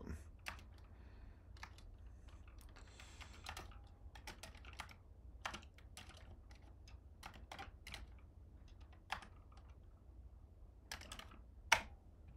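Typing on a computer keyboard: irregular key clicks as a command line is entered, with one louder keystroke near the end as the Enter key is pressed.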